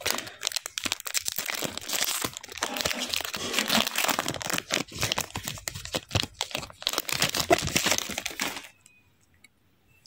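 Foil wrapper of a Panini NBA Hoops trading-card pack crinkling and tearing as it is ripped open by hand, a dense run of crackles that cuts off suddenly near the end.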